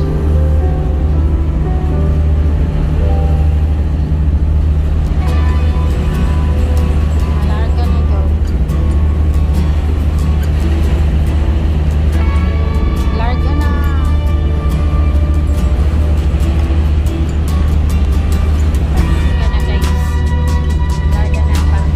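Steady low drone of a passenger ferry's engines, unbroken throughout, with music playing over it.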